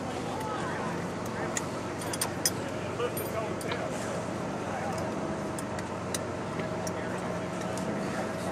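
An engine running steadily at idle, under faint, indistinct voices, with a few sharp clicks about two and three seconds in.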